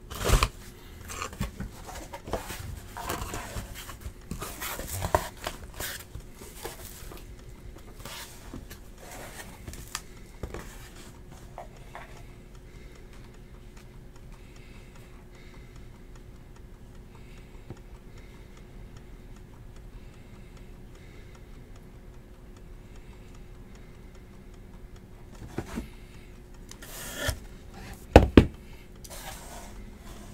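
Cardboard card boxes and packaging being handled: rustling, scraping and small knocks, then a quieter stretch over a faint steady hum, then two loud knocks near the end as a box is handled and set down on the table mat.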